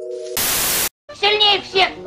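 A held musical chord ends, then comes a burst of TV-style static hiss of about half a second that cuts off abruptly. After a moment of silence, a high cartoon voice starts talking about a second in.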